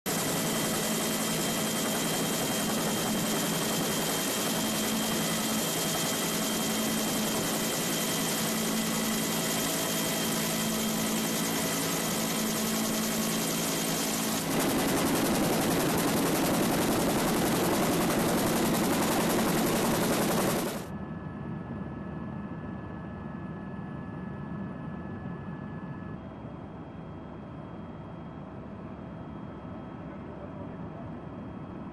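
Helicopter cabin noise: a steady drone of engine and rotor with a few held tones. It changes abruptly twice, to a louder, noisier stretch about 14 seconds in, and to a much quieter, duller drone about 21 seconds in.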